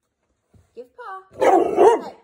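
A pit bull-type dog barking and vocalizing at its owner: a short call about three-quarters of a second in, then a louder, longer one with wavering pitch near the end.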